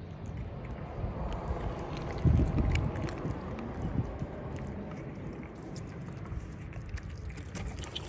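Wind rumbling on the microphone, strongest in a gust a little over two seconds in, with faint clicks of cats chewing raw fish scraps.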